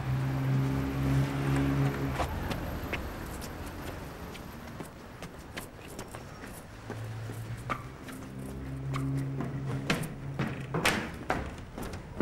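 A low steady hum in two stretches, one at the start and one in the later half, with footsteps and a few sharp knocks near the end.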